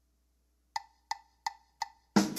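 Drumsticks clicked together four times, evenly spaced at about three a second, counting in a drum solo. The clicks begin about three-quarters of a second in.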